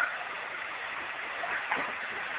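A pause in a man's recorded speech, leaving only the steady hiss of the recording.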